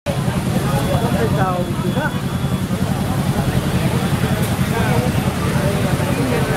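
A fire truck's engine running steadily with a low rumble, under the overlapping chatter of a crowd.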